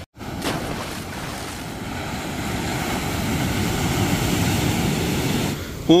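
Heavy surf washing onto a sandy beach: a steady wash of breaking waves that builds slowly. A brief dropout cuts the sound at the very start.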